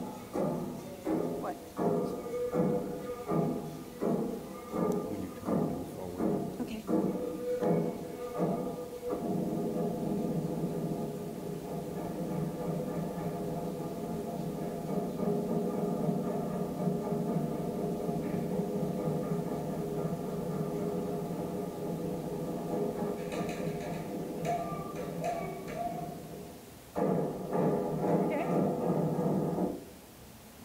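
Audio of a Northwest Coast raven-dance performance played through room speakers: drum beats about two a second with group singing, then a long steady stretch of held chanting, growing louder again near the end.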